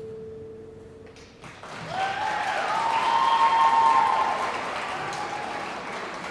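The last held note of the skating music fades out, then the audience bursts into applause and cheering about a second and a half in, building to its loudest around four seconds and tailing off.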